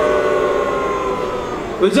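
A person's voice drawing out one long held vowel for most of two seconds, sinking slightly in pitch, then a short spoken word near the end.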